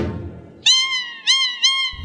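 Salsa music fades out, then three short high pitched tones sound, each opening with a quick upward slide: an edited transition sound effect, with music cutting back in at the end.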